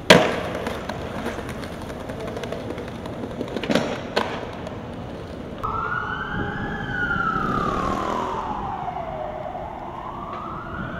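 Skateboard deck and wheels hitting the pavement with a sharp crack at the start and two more clacks about four seconds in. From about halfway, an emergency vehicle siren wails: one slow rise and fall, starting to climb again near the end.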